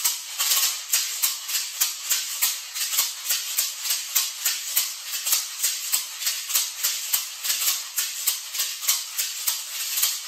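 A pair of maracas shaken in a steady, even rhythm of about three to four strokes a second. Each stroke snaps the beads one way and catches them coming back, giving a triplet-feel riff.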